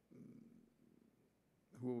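A man's speech at a microphone pauses. A faint low rumble lasts about a second and fades to near silence, then he speaks again near the end.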